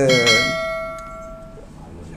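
Notification-bell chime sound effect of a YouTube subscribe-button animation: a single ding with several overtones, ringing out over about a second and a half.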